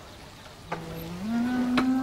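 Background score: a low sustained note starts under a second in, steps up in pitch and is held steady.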